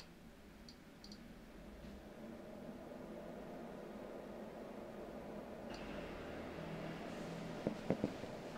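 Small lab hydrogen generator starting to make hydrogen: a low, even hum that slowly grows louder, with a faint high whine joining about six seconds in. Two light clicks come near the end.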